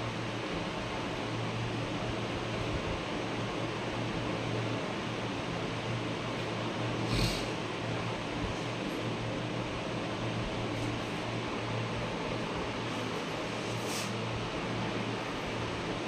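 Steady hiss with a low hum running under it, broken by two brief clicks about seven seconds and fourteen seconds in.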